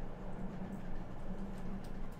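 Quiet room tone at a computer desk: a low steady hum with a few faint ticks.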